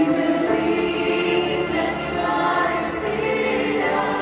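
Choral music: a choir singing long held notes.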